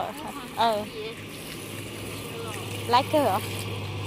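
Water from a garden hose running onto the glass shelves of a display cabinet, under a steady low hum that grows louder in the second half.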